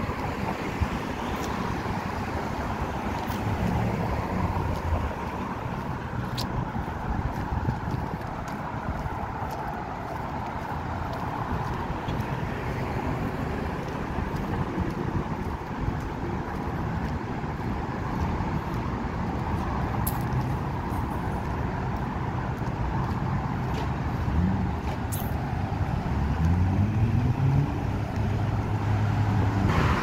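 Road traffic on a busy multi-lane street: cars passing with a steady rush of engine and tyre noise. Near the end a vehicle's engine rises in pitch as it speeds up.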